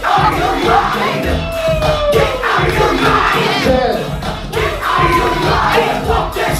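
Crowd whooping and shouting to hype a dancer over loud hip-hop music with a steady beat, with several long sliding calls.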